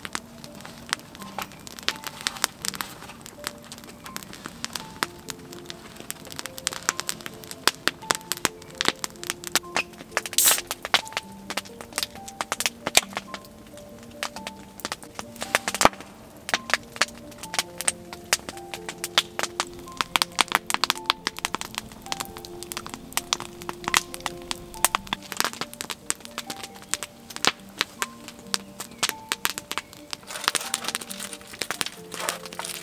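Long log fire crackling, with frequent sharp pops and cracks from the burning wood, under soft background music: a slow melody of held notes.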